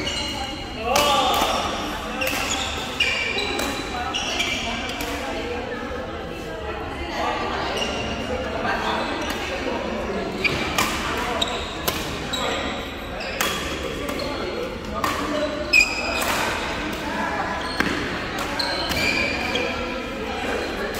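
Badminton rally in a large sports hall: repeated sharp racket strikes on the shuttlecock, short squeaks of court shoes on the floor, and indistinct voices of players and onlookers echoing in the hall.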